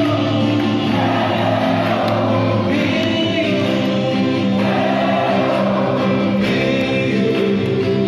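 A group of male voices singing a gospel action song together, with acoustic guitar accompaniment.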